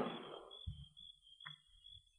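A dramatic pause in an old radio-drama recording: the end of a spoken line fades out in the first half-second, leaving only faint recording noise with a thin steady high-pitched whine and a couple of tiny clicks.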